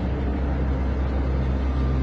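A deep, steady low bass drone of dark, ominous background music.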